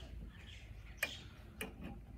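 Metal clicks from handling a portable gramophone's tonearm and soundbox: one sharp click about halfway through, followed by two softer knocks near the end.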